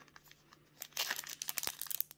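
Foil trading-card pack wrapper being torn open by hand: a quick run of crinkling, crackling tears starting about a second in.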